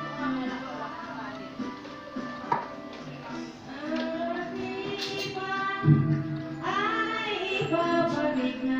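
A song playing, with a female voice singing held, wavering notes over musical accompaniment.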